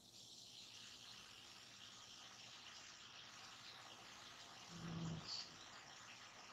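Near silence: a faint steady hiss of room tone, with one brief faint low sound about five seconds in.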